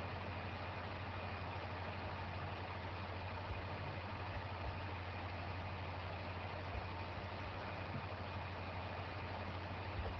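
Steady low hum under an even hiss, with a few faint knocks.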